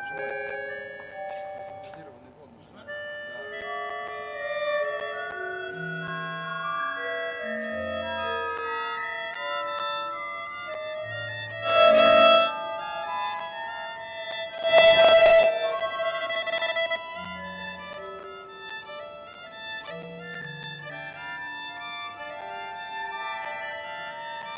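Free improvisation for violin and button accordion over a scatter of short electronic tones at many different pitches from the audience's phones. There are two loud swells, one about halfway through and another a few seconds later.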